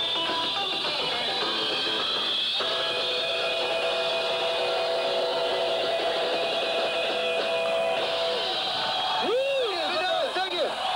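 Live rock'n'roll band playing, electric guitar to the fore with long held notes ringing; a man's voice comes in near the end.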